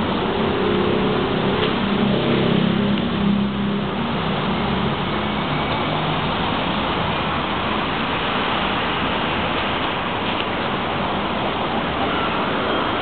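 City street traffic noise. A vehicle engine's low drone stands out over roughly the first five seconds, then blends into the steady traffic noise.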